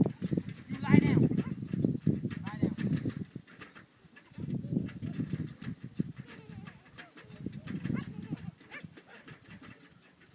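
Young Holstein cattle bawling: one strong call about a second in, with fainter calls later.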